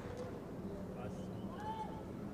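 Low steady background hum with faint distant voices, and a short higher-pitched sound rising and falling near the end.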